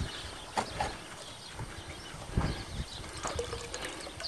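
Handling noise from buckets and a gold pan: a few light, separate knocks, with a little water trickling.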